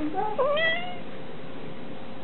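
A single short meow-like call, under a second long, with a pitch that jumps up and then glides down.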